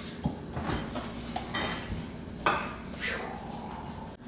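A few light knocks and clinks of a glass baking dish being picked up and handled, the sharpest knock about two and a half seconds in.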